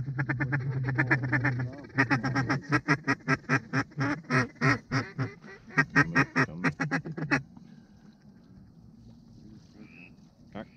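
Hunter's mallard duck call blown in a fast, even string of quacks at about six a second, then after a brief break a slower, choppier run of quacks, cut off abruptly about seven and a half seconds in: calling to draw circling ducks in to the decoys.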